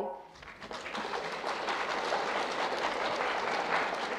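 An audience clapping, swelling over about the first second and then holding steady.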